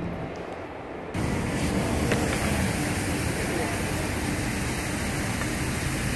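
Outdoor street noise that starts abruptly about a second in: a steady rush of wind on the microphone over traffic rumble, with faint voices of passers-by.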